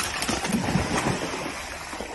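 Water splashing and churning at a pond's surface, as a hooked fish thrashes.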